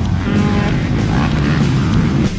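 Motocross bike engines running on a track, with music playing over them. The sound is steady and loud, with no breaks.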